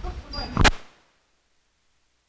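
A single sharp click about two thirds of a second in, then the sound cuts out to dead silence as the recording stops at an edit.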